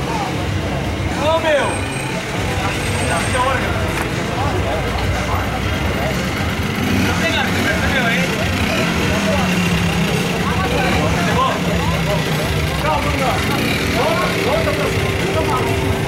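Background chatter of people talking, over a steady low rumble.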